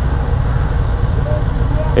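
Kawasaki ZX-10R's four-cylinder engine running low in the revs as the bike creeps along on the clutch in slow traffic, a steady low rumble.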